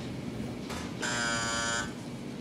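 Laundromat machine's end-of-cycle buzzer sounding once: a flat, steady buzz a little under a second long, starting about a second in, signalling that the laundry cycle is finished.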